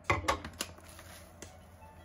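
A few sharp clacks and crinkles in the first half-second: a small ceramic dish set down on a digital kitchen scale while a foil-lined tea pouch is handled. A single light click follows about a second and a half in.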